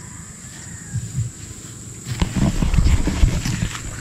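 Outdoor wind rumbling on a phone's microphone, getting louder and rougher from about halfway, with a sharp click just after halfway as the phone is handled. A faint steady high whine runs underneath.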